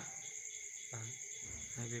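Crickets chirring steadily at a high pitch, with a voice speaking briefly from about a second in.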